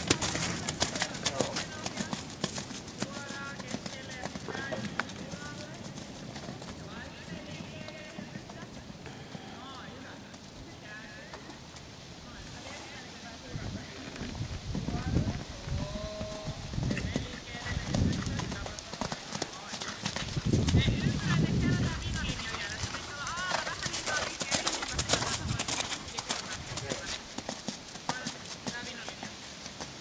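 Hoofbeats of a ridden horse moving over an arena's sand footing, with a person's voice at times.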